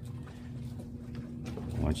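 A low, steady hum with a faint steady tone above it, under light background noise.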